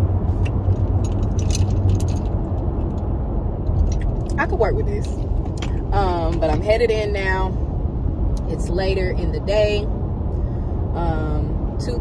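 Steady low road and engine rumble inside a moving car's cabin. A woman's voice comes in briefly a few times from about four seconds in, without clear words.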